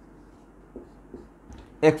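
Marker pen writing on a whiteboard: faint, soft strokes against room hiss. A man starts talking near the end.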